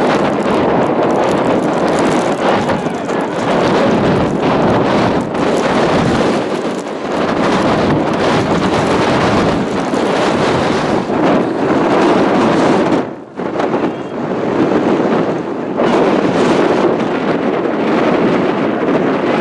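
Strong wind buffeting an outdoor camera microphone: a loud, rushing, fluttering noise that drops away briefly about thirteen seconds in.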